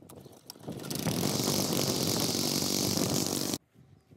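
Cub Cadet wheeled string trimmer's small engine running with the line cutting grass. It grows loud about a second in and cuts off suddenly near the end.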